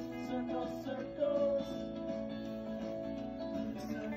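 Background music played on acoustic guitar, with sustained notes.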